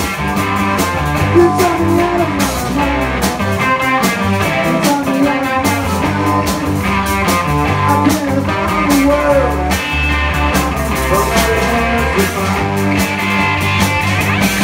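Live blues-rock band playing an instrumental passage: electric guitars over bass guitar and drum kit, with a guitar line of bent, gliding notes.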